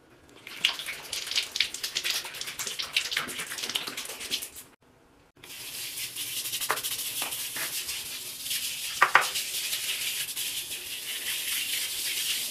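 A brush scrubbing a wet pebble-tile shower floor covered in cleaning powder, a dense rapid scratching. It breaks off briefly about five seconds in, then carries on as a steadier hiss with a few sharp clicks.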